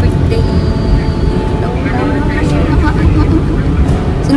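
Steady low road and engine rumble inside a moving car's cabin, with voices talking over it from about a second and a half in.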